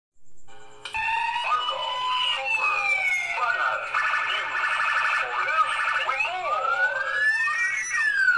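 News-programme intro sting: synthesized sound effects with siren-like pitch glides, starting about a second in and ending on a long rising sweep.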